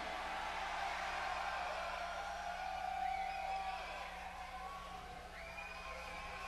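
Faint live-concert audience noise between songs, with a few scattered calls from the crowd over a steady low hum from the stage sound system.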